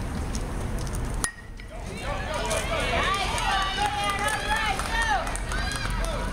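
A single sharp crack about a second in as a baseball bat meets the pitch, followed by a crowd of spectators shouting and cheering, many voices at once.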